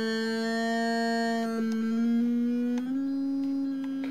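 A single held sung note from the vocal track, auditioned in Logic Pro X's Flex Pitch editor while its fine pitch is adjusted in cents. It sounds as one steady tone that steps up slightly in pitch twice, about two seconds in and again a little before the three-second mark.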